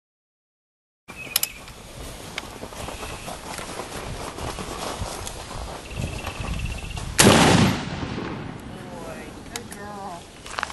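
A single loud pistol shot about seven seconds in, with a short echo trailing after it, over a steady outdoor background. The first second is silent.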